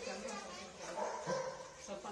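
People's voices talking.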